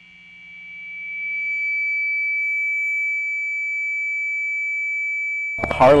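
A single steady, high-pitched electronic tone that fades in over about two seconds and then holds, part of the sound of a production-company logo sting. It cuts off suddenly near the end as a voice begins.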